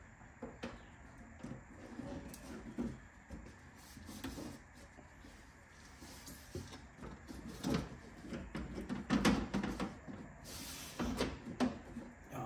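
Aftermarket wiper filler panel being test-fitted by hand below the windscreen: irregular knocks, clicks and rubbing as the panel is pushed and worked against the car body, busier and louder in the second half.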